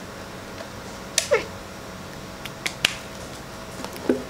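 Quiet handling noise: a few light clicks and knocks as things are picked up and moved. About a second in comes one short, high call that falls in pitch, meow-like.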